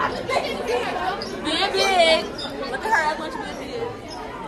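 Teenagers talking and chatting over one another in a lunchroom, with one voice rising high about halfway through.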